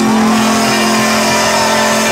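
Live country band holding one long steady note at the close of a song, electric guitars ringing out with the amplified sound of the stage.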